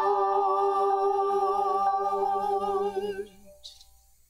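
Small vocal ensemble holding a sustained final chord, with slight vibrato, that cuts off about three seconds in.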